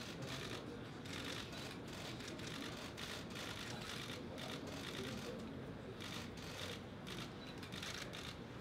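Many press cameras' shutters clicking in quick, overlapping runs, faint.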